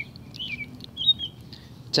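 Birds chirping: a series of short, high chirps.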